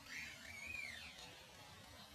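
Baby macaque giving a few short, high-pitched arching cries in the first second or so, rising and falling in pitch, while the mother handles it.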